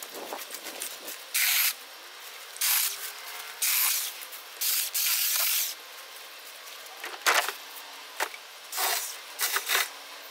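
Leafy shrub branches rustling and swishing in about eight short bursts, each a second or less, as they are pushed through and handled. There is a sharper knock about seven seconds in.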